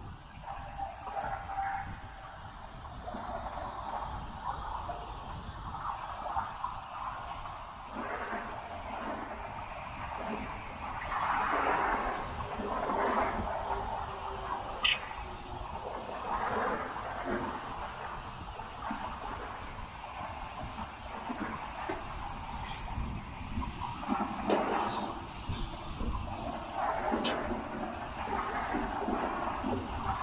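Steady motorway traffic noise that swells as lorries pass, with wind rumbling on the microphone. Two sharp clicks stand out, one about halfway through and one later.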